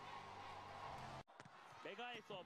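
Near silence: a faint background hiss that cuts out abruptly a little over a second in, followed by faint, brief voice-like sounds near the end.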